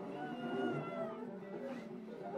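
Large improvising orchestra playing a dense, many-voiced texture. Through about the first second a high held note slides slowly downward over it.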